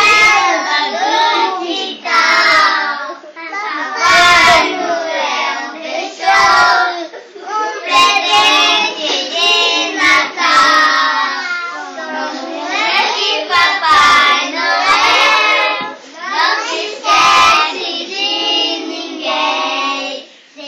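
A group of young children singing a Christmas song together in Portuguese, without instruments, in phrases that swell and break every second or two. A few sharp clicks sound over the singing.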